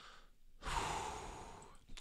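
A man's long breathy "whew" sigh into a close microphone. It starts about half a second in and fades away over about a second.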